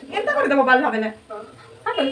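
A woman's voice in a high, sliding, drawn-out tone for about a second, followed by short bits of speech near the end.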